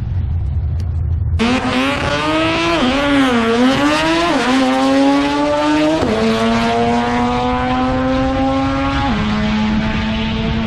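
A drag-racing car's engine accelerating hard down the strip. Its pitch wavers after the launch, then climbs, with three sharp drops at upshifts, the last near the end. Before it, for about the first second and a half, there is a low steady rumble.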